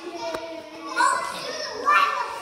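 Young children's voices calling out as they play, with a loud cry about a second in and another near the end; a single sharp click sounds about a third of a second in.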